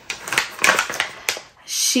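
Paper packaging crinkling and crackling in the hands as it is opened, in a quick irregular series of clicks.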